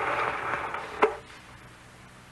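Radio-drama sound effect of a film projector whirring as the film is run back, ending in a sharp click about a second in as it is stopped.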